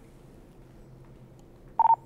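Quiet room tone, then near the end a single short electronic beep from a two-way radio handset: one steady mid-pitched tone lasting a fraction of a second, much louder than the background.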